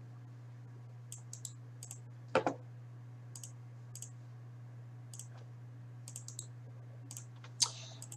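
Scattered clicks of a computer mouse and keyboard, in small clusters, with one louder click about two and a half seconds in, over a steady low hum.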